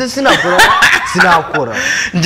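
A voice talking and chuckling at the same time, in short wavering bursts.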